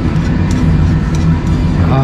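Steady low rumble of restaurant room noise with a few faint clicks, and a short 'ah' of satisfaction from a diner at the very end.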